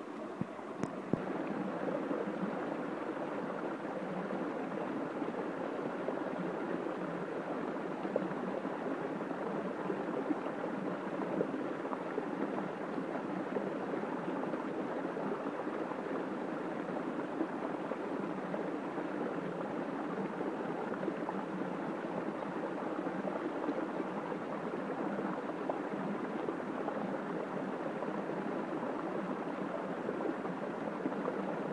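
Steady rush of stream water flowing around and over a hydraulic ram pump, with a few faint knocks.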